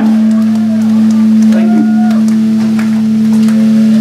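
Electric guitar left ringing through the amp as a loud, steady low drone of feedback, held unchanged after the drums and the rest of the band cut off at the end of a song.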